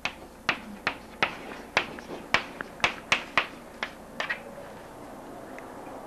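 Chalk tapping and scraping on a chalkboard as a word is written: a run of sharp taps, about two a second, that stops about four seconds in, leaving faint steady hiss.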